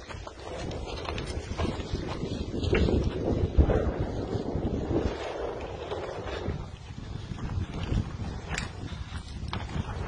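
Wind buffeting the microphone, with scattered sharp knocks and crunches from someone moving on foot over debris-strewn ground. The wind rumble is loudest about three to four seconds in.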